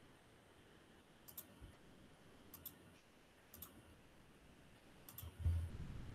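Faint computer mouse clicks: four quick double ticks spread about a second apart, with a louder low thump near the end.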